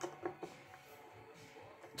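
A few short, faint clicks in the first half second from a screwdriver turning the neck screws of a Squier Affinity Jazzmaster's bolt-on neck. The screws are being tightened because they still have turn left from the factory.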